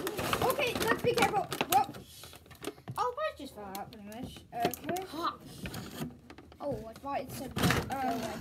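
Kids talking over the handling noise of packaging, with knocks and rustles of cardboard and plastic as a toy RC boat is pried out of its box.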